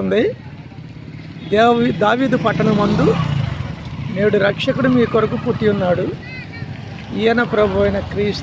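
Motorcycles passing close by on a road, their engines heard under a voice talking.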